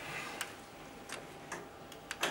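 A quiet room held in silence, with a few faint, irregular clicks.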